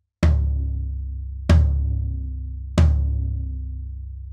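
Low-tuned floor tom struck three times, about a second and a quarter apart, each hit ringing out in a low boom that fades slowly. Its batter head is muffled with small cut pieces of Evans EQ Pod placed near the edge.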